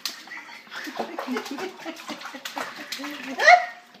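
A baby slapping and splashing the water in a plastic baby bathtub with her hands, in quick irregular splashes, with short baby vocal sounds between them. A loud rising laugh near the end.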